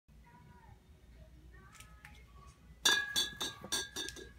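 Glass clinking: a quick, irregular run of five or six sharp clinks with a ringing note, starting a little before the three-second mark and still going at the end.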